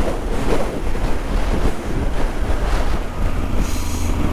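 A steady rush of wind over the microphone at road speed, with the low drone of a Yamaha XT1200Z Super Ténéré's parallel-twin engine running beneath it while the bike cruises.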